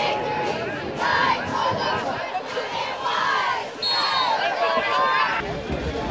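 Football-game crowd and cheerleaders shouting and cheering, many high voices overlapping, dying down about five seconds in.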